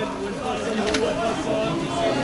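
Busy market crowd: several voices talking at once over a steady hum, with a sharp click about a second in.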